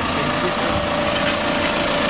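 Garbage compactor truck's engine idling steadily, with a constant high whine over the engine noise.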